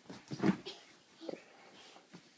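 A toddler's short excited yelps, the loudest about half a second in, with a thump and rustle as he drops onto a satin-sheeted mattress.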